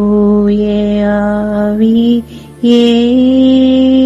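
A woman's voice chanting rosary prayers in Tamil on a nearly level pitch. There are two long held phrases with a short break just past halfway, over soft background music with a low steady drone.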